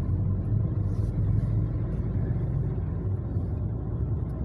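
Steady low rumble of a manual-transmission car's engine and tyres, heard from inside the cabin while the car is driven along the road.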